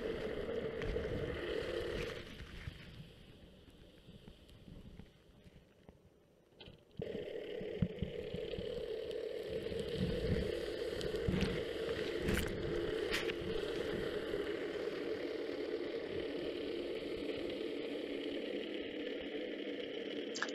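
Underwater noise picked up by a camera on a steel anchor's chain as it is dragged across a muddy seabed: a steady hum with scattered low knocks and scraping. It fades almost to nothing for a few seconds early on and then resumes.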